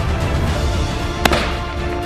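Background music with one sharp gunshot a little over a second in, fired at a running wild boar.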